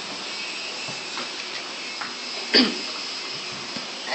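One short cough about two and a half seconds in, over a steady background hiss.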